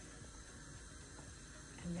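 Quiet room tone: a faint steady hiss with a low hum, no distinct sound events.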